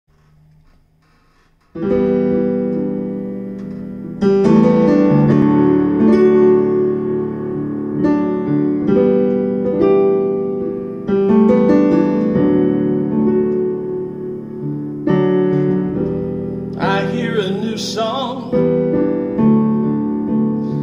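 Piano played slowly in sustained chords, a new chord every second or two, starting about two seconds in. Near the end a brief sung phrase rises over the playing.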